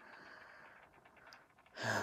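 A pause with faint room tone, then a man's audible intake of breath near the end.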